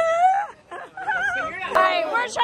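People's voices calling out in drawn-out, wavering tones, with several voices overlapping near the end.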